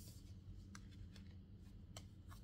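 Faint, soft clicks and rustles of tarot cards being handled and laid down on a cloth-covered table, a few light taps spread over the two seconds, over a low steady hum.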